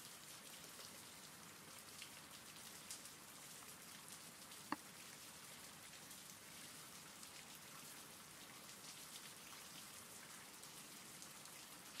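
Faint, steady recorded rain, an even patter of raindrops. A single sharp tick comes a little before halfway through.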